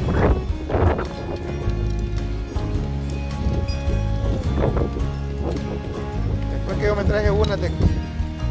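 Electronic background music with a steady bass line running throughout.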